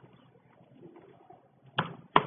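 Faint computer keyboard typing, with one sharp key click near the end.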